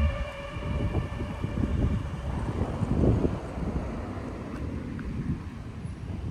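Music cuts off at the start, leaving a low, uneven outdoor rumble that swells briefly about three seconds in.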